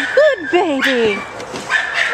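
Young dog whining and yipping in short cries that fall in pitch, with a thin high whine near the start and again near the end.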